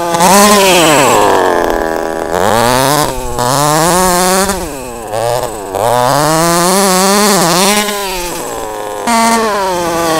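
HPI Baja 5B SS's 26cc two-stroke petrol engine revving up and falling back several times as the RC buggy is driven through turns, its pitch rising and dropping with the throttle.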